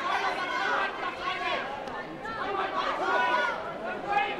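Overlapping chatter and calls from several voices at once, echoing in a large sports hall.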